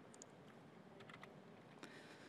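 Faint computer keyboard keystrokes, a few scattered clicks in about three small clusters, over near silence, as text is copied for pasting.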